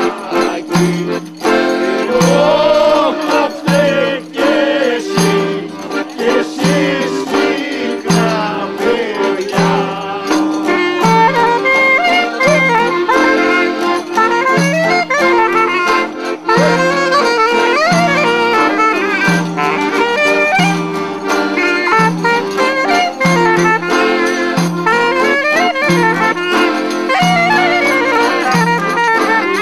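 Greek traditional music: men singing over an accordion that marks the beat with a bass note about once a second. About eleven seconds in, a clarinet takes up the melody, with the accordion carrying on beneath it.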